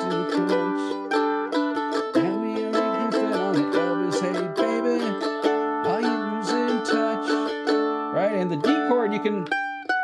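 F-style mandolin picked through a repeating rock verse pattern, changing quickly from A minor to G, then C and D, with a voice singing along over it.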